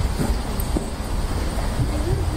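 Steady low rumble of wind noise on a moving camera's microphone, with faint voices underneath.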